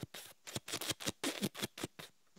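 A person imitating a helicopter's rotor with their mouth: a quick train of short chopping puffs, about five or six a second, quieter than the talk around it.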